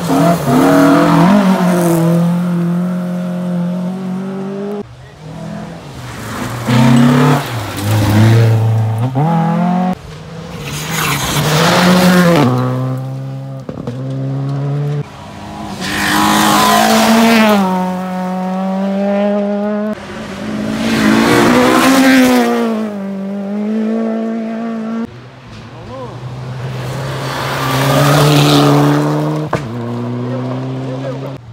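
Rally cars at full throttle on a gravel stage, one car after another in about six abrupt five-second stretches, each engine climbing in pitch through the gears with drops at the shifts.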